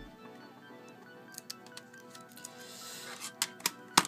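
Quiet background music with steady held notes, with a few light clicks and knocks of a 2.5-inch hard drive and its plastic enclosure being handled, a cluster about a third of the way in and more near the end.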